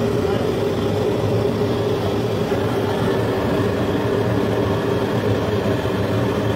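Handheld gas blowtorch burning with a loud, steady rushing flame and a steady hum while it heats a small piece of jewellery on a charcoal bed.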